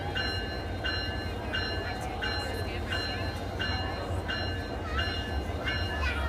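Diesel locomotive rumbling low as the train rolls slowly by, with a bell ringing steadily at about three strokes every two seconds.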